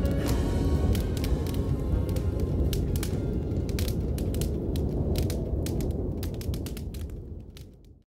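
Fire crackling over a low rumble, with irregular sharp pops, as the song's last note dies away; it fades out toward the end.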